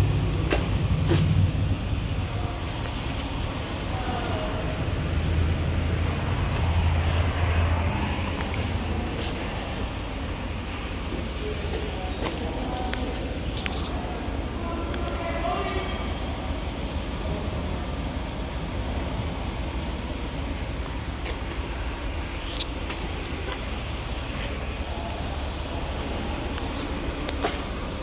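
Steady low vehicle rumble in a concrete parking garage, louder for the first eight seconds, with faint distant voices in places.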